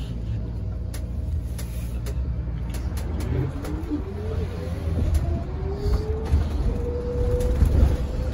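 Inside a moving New Flyer XT40 electric trolleybus: low road rumble with scattered rattles, and from about halfway a motor whine that rises steadily in pitch as the bus gathers speed.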